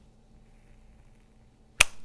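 Metal flip-top lighter snapping shut: one sharp click near the end, after a quiet stretch.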